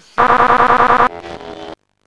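Harsh, distorted electronic buzzing sound effect, loud and rapidly pulsing. About a second in it drops to a quieter buzz, then cuts off suddenly shortly before a silent black screen.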